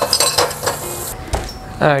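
Dishes and cutlery clinking as they are washed by hand under a running kitchen tap; the running water stops about a second in.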